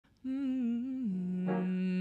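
A woman's voice singing wordlessly: a held note with a light wobble in pitch that steps down to a lower sustained note about a second in.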